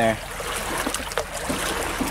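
Shallow water lapping and trickling among rocks at the shoreline, a steady wash with a few small ticks, with some wind noise on the microphone.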